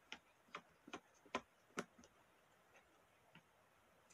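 Faint sharp clicks and taps from hands handling a hardcover book, about two a second for the first two seconds, then a couple of fainter ones.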